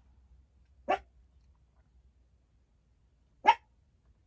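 A small dog barking twice, two short, sharp yaps about two and a half seconds apart, the second louder.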